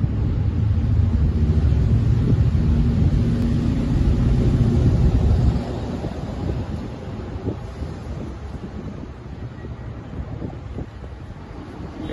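Low engine rumble of passing street traffic, loud for the first five seconds or so, then dropping off suddenly to a quieter steady street background.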